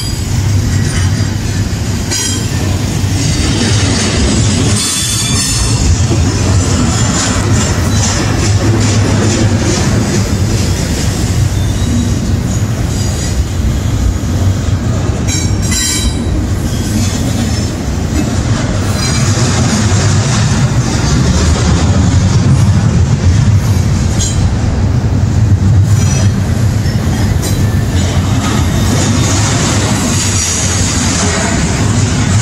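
Double-stack intermodal container well cars of a freight train rolling past: a loud, steady rumble of steel wheels on rail, with a few sharp clicks along the way.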